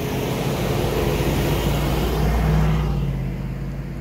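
A motor vehicle driving past on the road: a steady engine hum under tyre and road noise, swelling to its loudest a little past the middle and then easing off.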